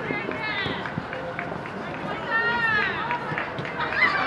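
Futsal players shouting calls to each other during play: two long drawn-out calls, the first about half a second in and the second around two and a half seconds in, over the patter of running footsteps and a few sharp knocks of the ball being kicked.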